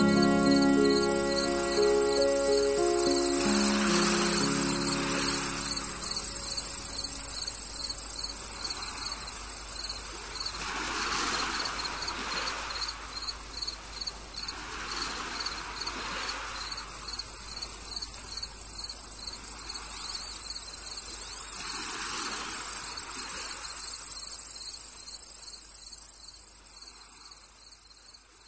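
Crickets chirping in a steady, even pulse, with soft swells of noise coming and going every few seconds. The last notes of a slow instrumental piece die away in the first few seconds, and the whole fades out near the end.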